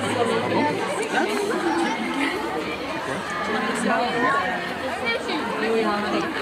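Many people talking at once: indistinct, overlapping crowd chatter at a steady level.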